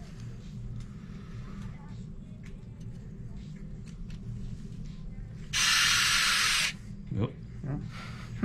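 Surgical power wire driver run once, a sharp hiss lasting about a second, starting about five and a half seconds in and cutting off suddenly, over a low steady hum.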